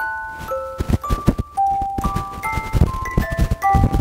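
Hand-cranked music box movement: pins on the turning cylinder pluck the tuned teeth of the metal comb, playing a string of bright, briefly ringing single notes, some overlapping, in a tune described as weird and unrecognised. Low clicks sound between the notes.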